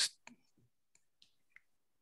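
The end of a spoken word, then near silence broken by a few faint, short clicks.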